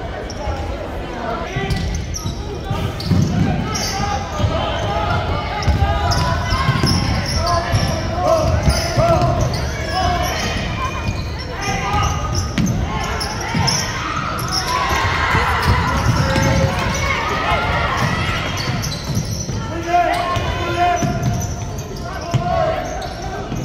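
Basketball dribbled on a hardwood gym floor in repeated thuds, with players and spectators shouting and talking in the echoing gym.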